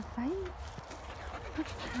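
A dog whining in short moans that rise and then fall in pitch, one in the first half-second and another starting at the end, with a brief squeak between.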